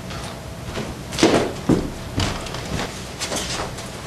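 A few irregular knocks and scuffs of movement on a theatre stage, the loudest about a second in.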